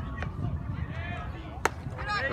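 A single sharp crack of a baseball meeting bat or glove at home plate, about one and a half seconds in, with spectators' voices and chatter around it.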